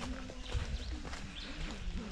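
Footsteps of a hiker climbing a wet dirt-and-rock trail, with his hard breathing as he runs short of air on the climb.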